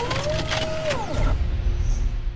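Nitto Tire's animated logo sting: a fast run of sharp mechanical clicks and sweeping whooshes, then a deep rumbling hit with a high shimmer that begins to fade out.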